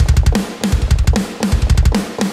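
Virtual drum kit playing back from a DAW: a fast pattern of rapid kick-drum strokes under repeated snare and tom hits, with a wash of cymbals.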